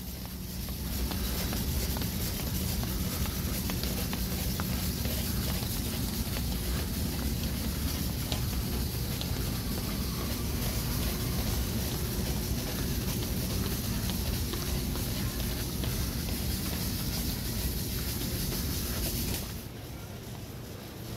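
Steady ambient noise of a large airport terminal hall: a low rumble and hum under a high hiss, with faint scattered clicks. It drops off abruptly at a cut just before the end.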